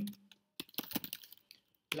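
Typing on a computer keyboard: a quick run of keystrokes starting about half a second in and lasting about a second.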